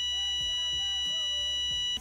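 A steady electronic beep tone, one unbroken pitch with a high buzzy edge, held for about two seconds and cutting off suddenly, over faint background music.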